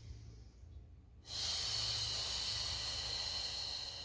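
A woman's long, loud, hissing exhale lasting about three seconds, starting about a second in, after a fainter inhale: the Pilates breath that goes with curling up into a chest lift.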